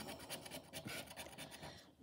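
A plastic scratcher rasping the scratch-off coating from a lottery scratch card in quick, repeated, faint strokes.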